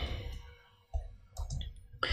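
A few faint computer keyboard keystrokes, spaced unevenly, as a formula is typed.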